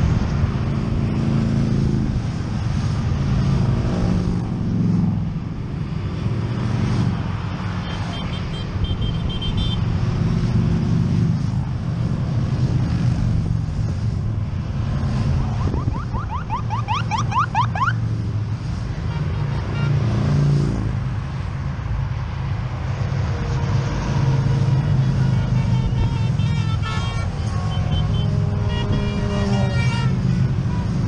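Motorcycles passing on the highway below, a continuous low engine rumble that swells and fades as groups of bikes go by.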